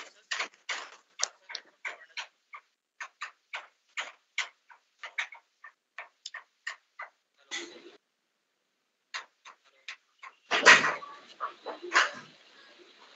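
Choppy, broken-up audio from a video-call participant's microphone: short clicks and fragments cutting in and out about three times a second, the sign of a poor connection, with one louder burst near the end.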